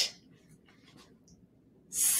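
A woman's voice hissing a long "sss" (the /s/ phonics sound), which cuts off just after the start. A few faint ticks follow in near quiet, then a second long "sss" hiss begins near the end.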